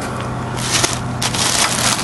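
Clear plastic sheeting wrapped around a crate engine crinkling and rustling as it is brushed and handled. The crackle is irregular and fills the second half most.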